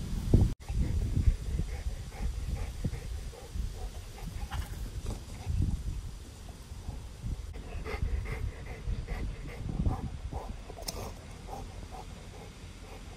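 A dog panting in quick, even breaths after chasing a ball, with a sharp knock about half a second in.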